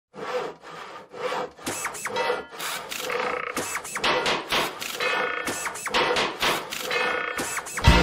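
Hand saw cutting wood in quick, even back-and-forth strokes, about three a second.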